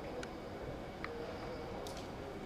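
Steady low background noise of the surroundings, with three short, faint high squeaks spread through it.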